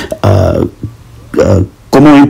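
A man's voice making two short, drawn-out hesitation sounds like "uh", one just after the start and one past the middle, with brief pauses between.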